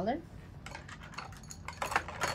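Light clicks and scrapes of a metal nail-art tool against a palette dish, with a sharper clink near the end.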